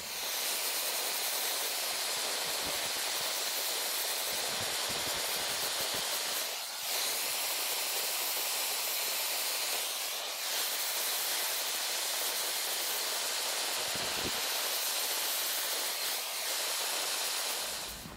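Gas torch flame hissing steadily as it heats the aluminum bike frame's seat tube to burn off the paint around a crack, with brief dips in level a few times.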